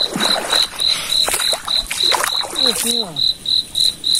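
Cricket chirping steadily in a high, regular pulse about three times a second, with brief rustling noises in between.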